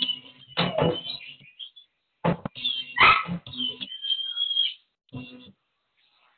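Dogs barking in about five short, loud bursts at uneven intervals as they chase a goose.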